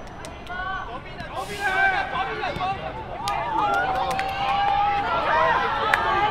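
Several voices shouting and calling to one another across an outdoor football pitch, overlapping, with one long drawn-out call in the middle and a few sharp knocks.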